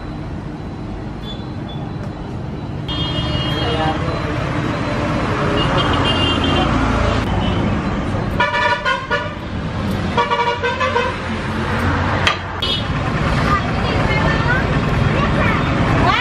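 Street traffic noise with vehicle horns honking several times, the strongest two honks about halfway through, over a steady rumble of passing traffic.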